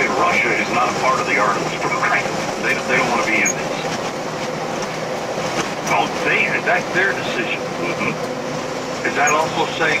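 Talk-radio voices played through a car's speakers inside the moving cabin, over steady road and engine noise, with a faint steady hum throughout.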